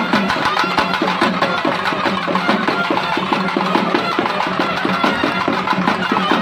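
Tamil folk temple band: double-reed pipes playing a wavering melody over a held low drone, with fast, steady strokes on a barrel drum underneath.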